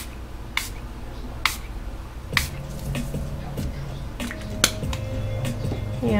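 A felt alcohol-ink dauber tapped against a glazed ceramic tile, giving sharp, irregular taps about one a second.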